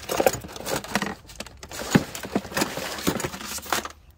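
Hand rummaging in a plastic bucket of tools, zip ties and a plastic bag to pull out a pair of clip pliers: irregular clinks and clatters with rustling, one sharp knock about halfway through.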